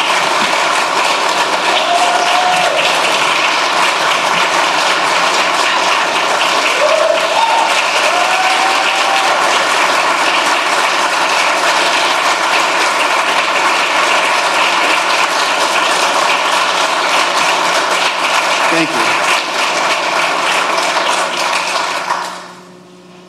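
Audience applauding in a standing ovation: a long, steady round of clapping from a large crowd, with a few voices calling out over it, cut off suddenly at the very end.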